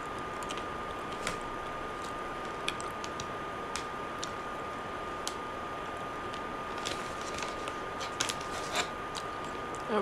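Steady hiss of a phone microphone's room tone with a faint constant high-pitched tone, broken by scattered small clicks.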